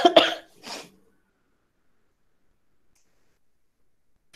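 A woman coughing, a few short coughs in the first second.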